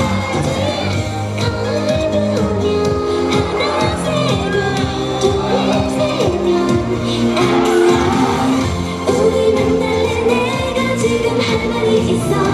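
K-pop girl group song played loud through a concert PA: an upbeat pop backing track with female group vocals, continuous and steady.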